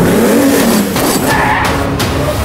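Dirt bike engines revving in a rising then falling pitch, with a high squeal about halfway through, mixed over action-trailer music.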